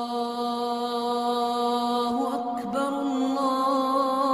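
Slow chanted vocal music of long, held notes, the pitch shifting a little about two seconds in.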